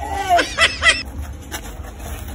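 Several short, high-pitched whimpering cries in quick succession, stopping about a second in.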